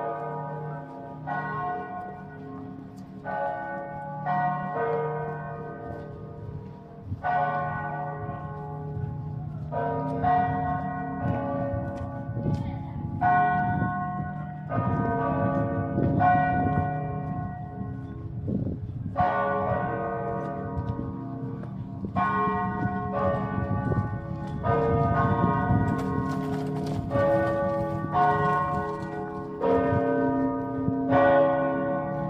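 Helsinki Cathedral's church bells pealing: several bells struck one after another about once a second, strokes overlapping and ringing on over a sustained low hum.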